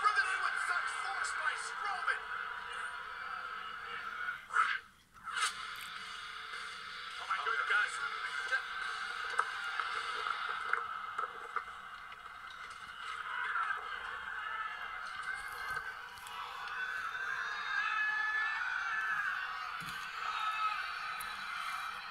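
Wrestling TV broadcast audio played through a television speaker: arena crowd noise with indistinct voices, sounding muffled and thin. There is a brief drop-out about five seconds in.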